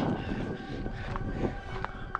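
Steady low rumble and hiss inside a car's cabin, with faint steady hum tones and a few light clicks in the second half.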